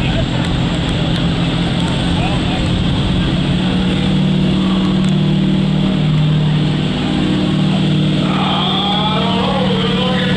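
Ford Super Duty pickup's engine running hard and steady under full load as it drags a weight-transfer pulling sled, a loud low drone held at one pitch. An announcer's voice over the PA comes in near the end.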